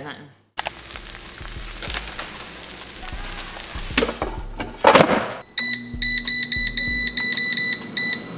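Air fryer basket pushed into place with a knock, then the air fryer's control panel beeping rapidly, about four short high beeps a second, as it is set, with a low steady hum starting at the same moment.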